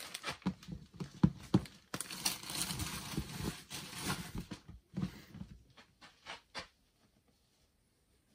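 Plastic mailing bag rustling and crinkling as T-shirts are handled and packed away, with a few sharp knocks and clicks, stopping about seven seconds in.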